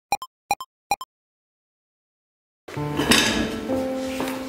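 Three pairs of short, pitched pop sound effects in the first second, then silence, then background music starting a little before the three-second mark with a bright clinking attack.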